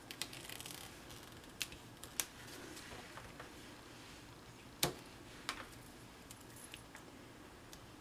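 Faint handling of card stock and adhesive strips, with a few soft, sharp clicks; the loudest, a little before five seconds in, is a single snip of scissors trimming an adhesive strip.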